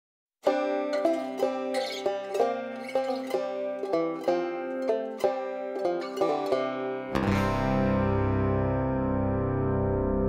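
Song intro: a banjo picks a slow melody alone, note by note with each note ringing. About seven seconds in, the band enters with bass and held chords.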